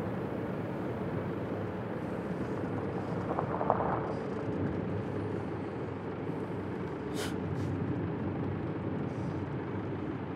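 Steady road and engine noise of a car being driven, heard from inside the cabin, with a short faint hiss about seven seconds in.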